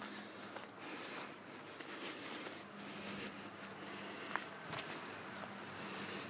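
Steady, high-pitched insect song, like crickets, with faint footsteps on a woodland trail.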